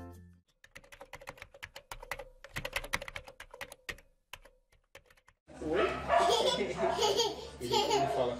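A run of quick, irregular clicks, like typing, lasts about five seconds. Then, about five and a half seconds in, a toddler laughs loudly with an adult talking.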